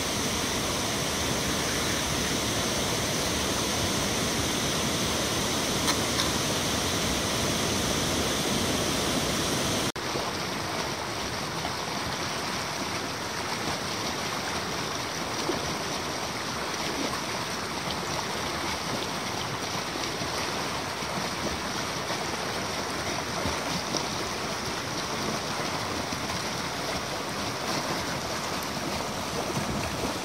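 Steady rush of river water pouring over a weir, cutting suddenly about ten seconds in to a slightly quieter rush of water running through a boulder rapid.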